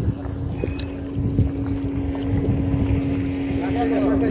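A motorboat engine's steady low hum, growing louder in the second half, with wind rumbling on the microphone.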